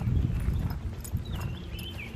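Footsteps of someone walking over grass and concrete, heaviest in the first half-second and lighter after.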